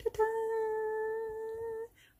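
A woman's voice sung as a 'ta-daa' fanfare, holding one steady note for nearly two seconds.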